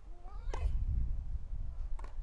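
Tennis racket striking the ball about half a second in, with a player's short, high-pitched cry on the shot; another racket strike near the end.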